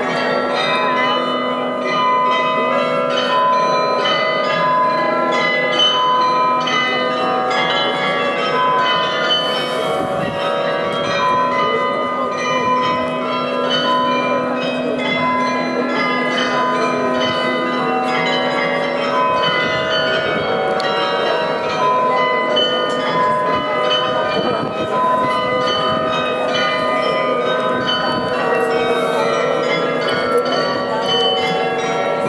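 The Munich New Town Hall Glockenspiel's 43 bells playing a tune during its hourly show: struck notes follow at an even pace, each ringing on and overlapping the next.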